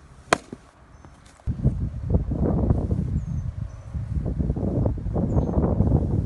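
A pitched baseball pops once into the catcher's mitt, a single sharp smack about a third of a second in. From about a second and a half on, gusty wind rumbles on the microphone.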